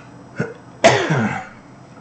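A man coughs once, briefly, about a second in, with a faint click just before it.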